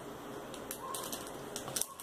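Faint crinkling of a clear plastic bag of loom rubber bands being handled and put down, with a light knock near the end.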